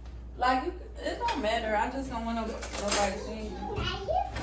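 Voices talking, with a kitchen drawer being pulled open and the utensils in it clattering.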